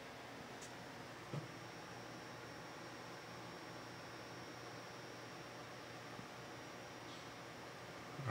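Faint room tone: steady low hiss with a thin, high, steady whine, and one soft knock about a second and a half in.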